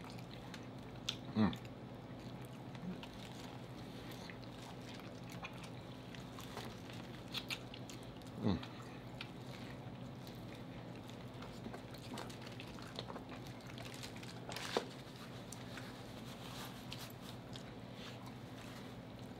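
Close-miked eating: quiet biting and chewing of Mexican street corn on the cob, with a few louder wet mouth sounds about one and a half, eight and a half and fifteen seconds in, over a steady low hum.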